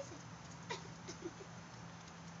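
Small noises from a pet playing: one sharp click about two-thirds of a second in and a few faint short sounds around it.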